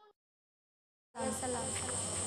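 Dead silence for about the first second, then a steady hiss comes in with a thin high-pitched whine and a low hum under it: the background noise of the recording before the singing starts.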